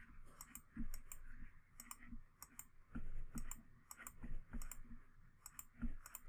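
Computer mouse button clicking repeatedly as items are selected one after another: short, sharp ticks, often in quick pairs, at irregular intervals.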